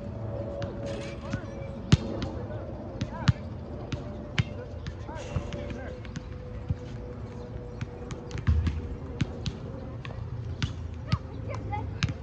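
Soccer ball being kicked and bouncing on the grass: a series of sharp, irregular thumps, the loudest about two and three seconds in, over a faint steady hum.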